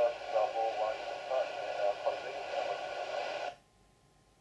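A voice on an air traffic control VHF radio transmission, narrow-band and hissy, too garbled to make out. The transmission cuts off suddenly about three and a half seconds in, leaving only a faint background.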